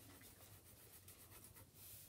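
Faint scratching of a pencil writing on a sketchbook page, over a low steady hum.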